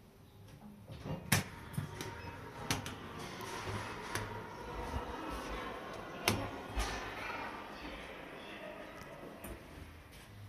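Hitachi elevator's sliding car doors running open and then shut, a rolling rumble with several sharp clicks and knocks as buttons are pressed and the doors start and stop.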